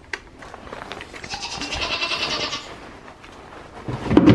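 Goat kid giving a single raspy, breathy bleat about a second and a half long in the middle, after a few soft clicks.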